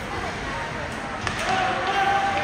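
Ice hockey play: a few sharp knocks of sticks and puck, the loudest a little past a second in, followed by people shouting.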